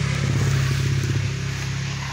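A motor vehicle engine running nearby, a steady low drone that swells a little in the first second and then eases off.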